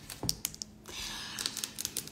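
Tarot cards being handled on a marble tabletop: several light clicks and taps in the first second, then a soft sliding rustle with a few more ticks.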